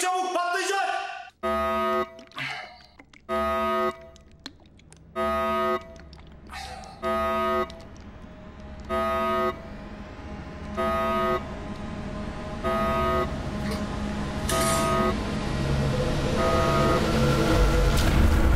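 A horn-like warning tone sounding about eight times, each blast about half a second long and roughly two seconds apart, growing fainter. Beneath it a low rumbling noise swells steadily toward the end.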